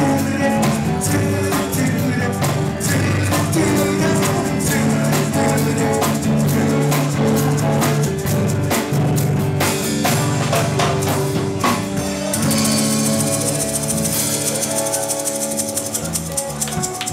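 Live rock band playing: electric guitars, bass and a drum kit in a steady beat. About twelve seconds in, the beat gives way to held notes under a sustained cymbal wash, the band ringing out its final chord.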